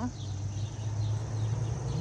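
Outdoor background noise: a steady low hum under a faint, even high hiss.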